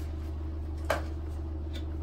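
A single sharp plastic click about a second in from the frame of a folding baby bath seat being handled, its leg being folded out, over a steady low hum.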